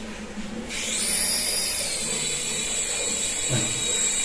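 Small electric motor and rotor of a toy infrared-sensor helicopter starting up abruptly. It whines quickly up in pitch as it lifts off, then settles into a steady high whir.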